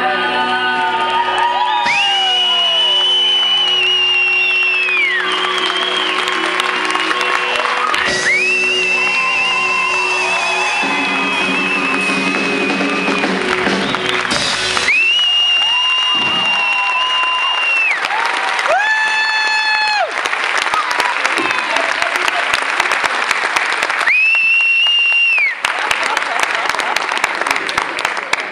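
Audience applauding and cheering as a band's last chord rings on underneath and fades by about halfway. Four long, high whistles from the crowd stand out over the clapping.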